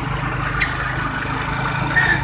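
Motorcycle engine of a Philippine tricycle running steadily, heard from inside the sidecar as an even, low drone, with one light click about half a second in.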